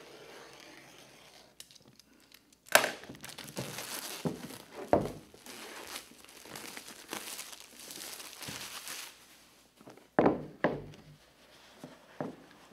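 Plastic shrink-wrap being slit and pulled off a cardboard box, crinkling and tearing for several seconds with a few sharp snaps. Near the end the box knocks two or three times against the table.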